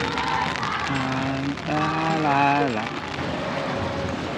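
Steady rain-like hiss, with a voice holding long, wavering notes about a second in.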